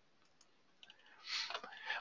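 Near-silent pause broken by a few faint computer-mouse clicks a little under a second in, then a short breath drawn just before speaking resumes.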